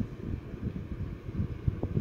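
Uneven low rumble of handling noise on a handheld phone's microphone, with no speech.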